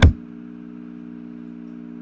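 A single sharp click at the very start, then a low steady hum of a few held tones.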